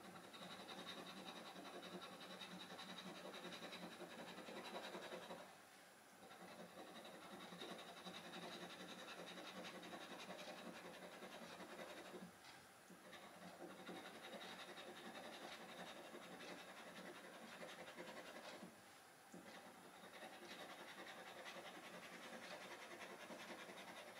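Faint, continuous rasping of a round metal scratcher scraping the silver coating off a scratchcard, with three brief pauses between runs of strokes.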